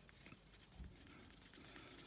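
Very faint rubbing of a cloth scrubbing the glass screen of an iPod Nano, barely above silence.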